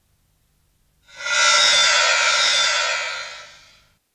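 Short closing-credits music sting: a bright, shimmering swell of several held high tones that comes in sharply about a second in and fades away near the end.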